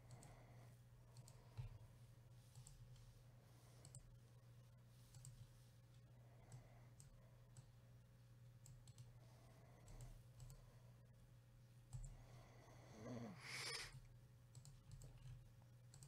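Near silence with faint, scattered clicks of a computer mouse over a steady low hum. A brief louder noisy sound comes about thirteen seconds in.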